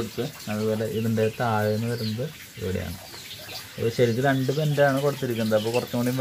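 A person talking, with faint water trickling from the grow bed's PVC drain pipe into the fish tank underneath.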